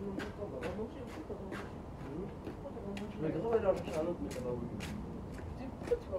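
Indistinct voices talking, clearest about halfway through, over a steady low background hum, with scattered short clicks.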